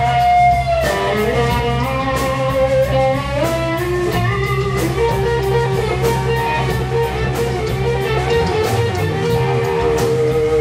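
Live rock band playing an instrumental: an electric guitar plays a slow lead of long held notes that glide up in pitch, over a steady bass guitar line and drums with regular cymbal strokes.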